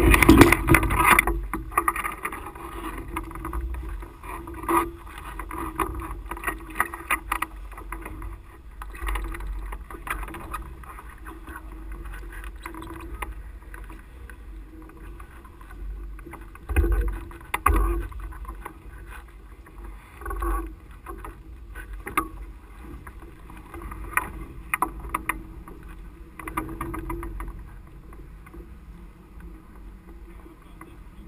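Nylon wing fabric and lines of a powered parachute rustling, bumping and knocking as the wing is gathered and packed against the machine. The sounds come in irregular clusters over a low, steady rumble, loudest in the first second.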